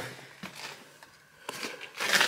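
Low room noise in a pause between words, with two faint short clicks, one about half a second in and one about a second and a half in.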